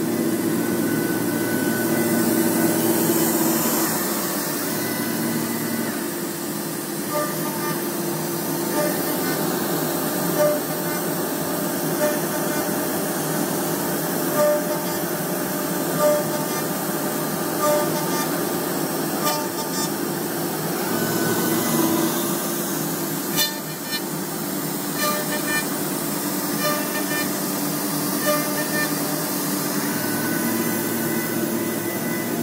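CNC router spindle running steadily while a dovetail bit cuts into a wood panel, with the dust extraction going. From about seven seconds in there is a brief louder pulse every second and a half or so.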